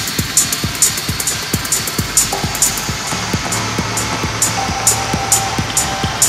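Techno track playing in a DJ mix: a steady four-on-the-floor kick drum with evenly spaced open hi-hats, and a sustained synth tone that comes in about two seconds in, joined by a higher one near the end.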